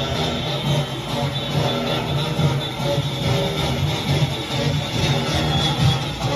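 Live Junkanoo street-parade music: a steady drum beat with horns playing over it.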